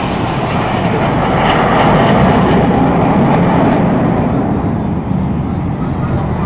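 Jet aircraft flying low past the crowd: a loud, steady rushing roar that swells a little about two seconds in and eases near the end.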